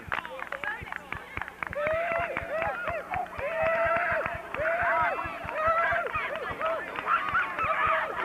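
A group of children's voices cheering and shouting together to celebrate a win. The shouts start about two seconds in and come in repeated, high, rising-and-falling calls roughly once a second.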